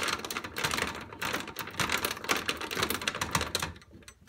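The metal nail file of a pair of fingernail clippers is being jiggled and twisted inside an arcade coin door's lock, used as a makeshift skeleton key. It makes rapid, irregular clicking and rattling that stops just before the end.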